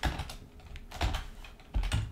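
Computer keyboard being typed on: a few separate keystrokes while code is entered in an editor.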